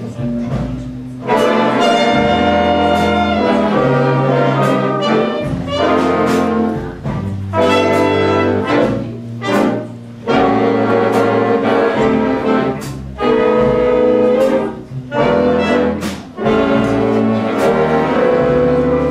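Jazz big band playing live: the brass and saxophone sections play loud full-band chords in short phrases, with brief breaks between them, over double bass and drums.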